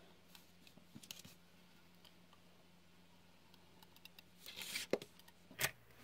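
Faint paper handling on a craft mat: mostly quiet with a few light clicks, then a short papery scrape and a couple of clicks near the end as the paper and an adhesive applicator are worked.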